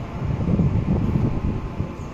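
Wind buffeting the microphone: a low, uneven rumble that swells and fades.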